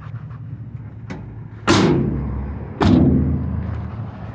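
Two heavy slams about a second apart, each ringing briefly: the side barn-style cargo doors of a 2005 Chevrolet Express van being shut one after the other.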